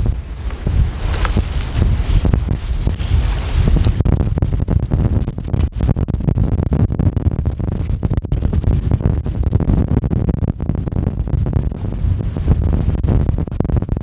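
Strong gusty wind buffeting the microphone, a loud constant rumble that rises and falls with the gusts. In the first few seconds, water splashing as a person jumps in and swims.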